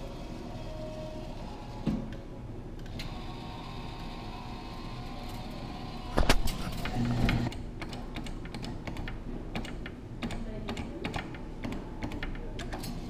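Claw machine in play: rapid mechanical clicking from the claw's mechanism over a steady background hum, with one loud knock about six seconds in.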